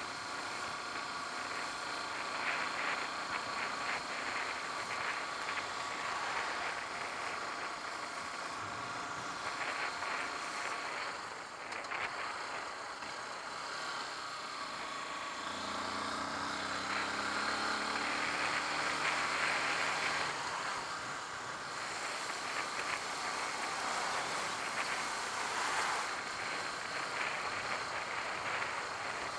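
Honda CBF125 single-cylinder four-stroke engine running on the move, heard through steady rushing air noise. For a few seconds around the middle a lower steady note joins in.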